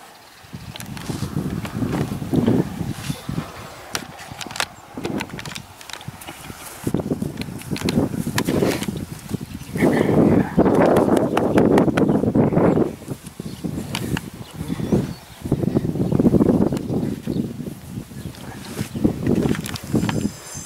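Close rubbing and rustling noise as horses nose at and brush their muzzles and coats against the microphone, coming in uneven swells with small clicks, loudest about ten seconds in.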